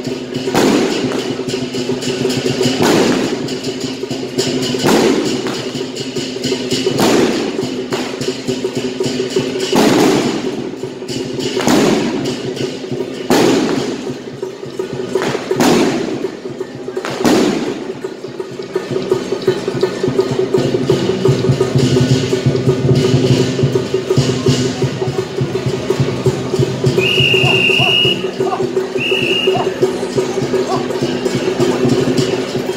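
Temple procession music: a steady held drone, punctuated by a loud crashing strike about every two seconds until about two-thirds of the way through. Near the end come two short high whistle-like tones.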